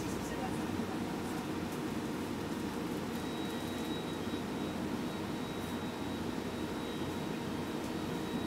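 Steady cabin hum of a city bus idling or creeping in traffic, heard from inside. A faint thin high tone comes in about three seconds in.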